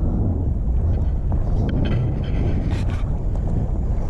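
Wind buffeting the microphone: a steady low rumble, with a few faint ticks about two to three seconds in.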